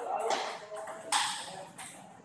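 Table tennis balls ticking off paddles and tables, with voices in the background; a sharp, loud crack just over a second in is the loudest sound.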